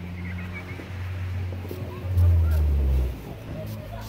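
A few short sprays from a hand-pump spray bottle misting water onto a paintbrush. About two seconds in there is a loud low rumble lasting about a second.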